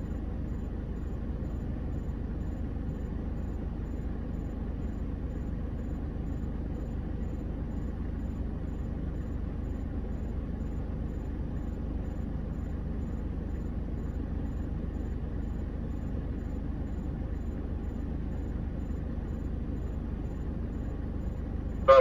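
Steady low engine rumble from idling vehicles, heard from inside a stationary vehicle's cabin, even throughout with no revving or sudden sounds.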